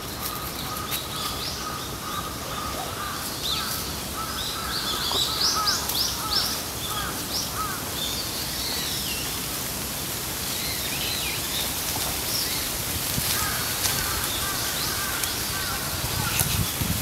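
Outdoor ambience with several birds calling, a quick run of high calls about five to seven seconds in, over a steady background hiss.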